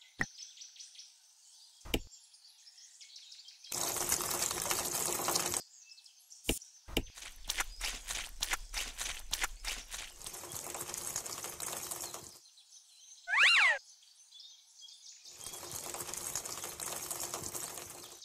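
A small trowel scraping and stirring a sand and cement mix in a little tin bucket, gritty scraping in spells with many small clicks, then wet mortar sliding out of the tipped bucket. A single loud, short falling chirp, like a bird's, a little after halfway.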